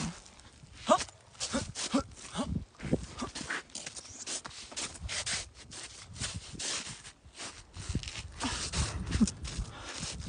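Boots scuffing and crunching on snow-covered lake ice in an irregular run of short scrapes and crunches as she shuffles and slides about.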